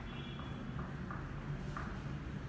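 Pen writing on paper at a table, making faint light ticks a few times a second over a steady low room hum.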